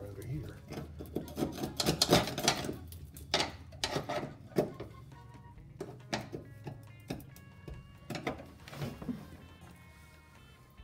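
Irregular scraping and knocking of hand tools against a car's metal floor pan as old factory tar and glue are dug out, loudest about two seconds in. Music plays in the background, its notes clear from about the middle on.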